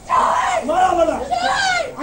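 A young woman screaming and crying out in distress as police officers beat her, recorded on a mobile phone: two long, high-pitched cries, one straight after the other.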